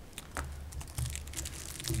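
Faint scattered clicks and rustles of handling at a desk microphone, over a low steady hum.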